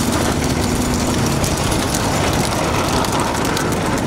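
Motor vehicle engine running steadily under dense road and wind noise, heard from a vehicle moving alongside racing bullock carts.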